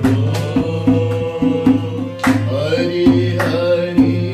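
Harmonium playing sustained chords, with a two-headed barrel hand drum beating a rhythm and voices singing a devotional chant over them.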